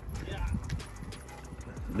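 Weathered old bicycle being ridden over a concrete path, rattling and clicking over the rough surface, with a low rumble from the ride.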